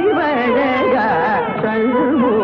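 Carnatic concert music in raga Begade: a continuous melodic line that bends and oscillates around its notes in dense gamaka ornaments.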